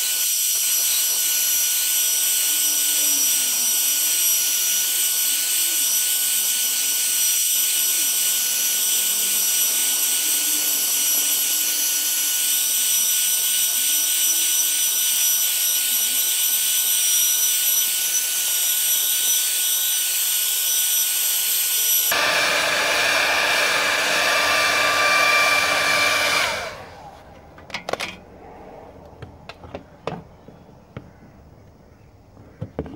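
Handheld hair dryer blowing steadily at close range on a plastic car bumper, heating it to soften the dent. Its sound changes about two-thirds of the way through, and it switches off near the end. A few sharp knocks follow.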